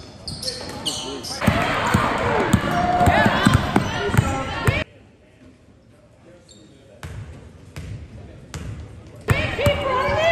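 Basketball game sound in a gym: a ball bouncing on the hardwood court amid echoing voices of players and crowd. Partway through it cuts off abruptly to a much quieter stretch, then comes back loud near the end.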